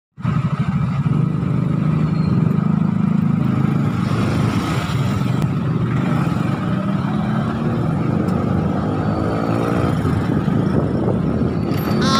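Motorcycle engine running through slow traffic over a steady low rumble. It rises in pitch as the bike speeds up about eight seconds in.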